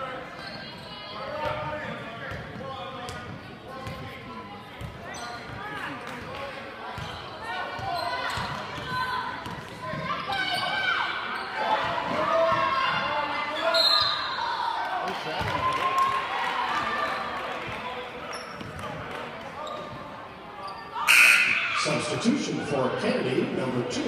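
Basketball game sounds echoing in a large gym: a ball bouncing on the hardwood amid the voices of players and the crowd, with a brief louder burst near the end.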